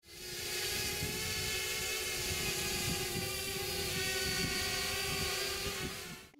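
Camera drone hovering: the steady whine of its motors and propellers, several held tones over a hiss.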